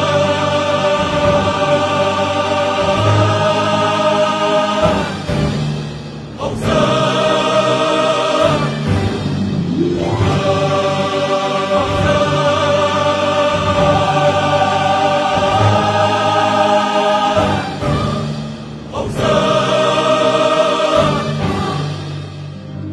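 Islamic devotional nasheed music: choir-like voices hold long chords in phrases of several seconds, with short dips between them, and the music fades out at the end.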